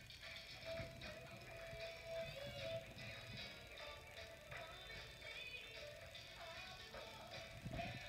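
Faint music with the metal taps of tap shoes clicking on a stage floor during a tap solo.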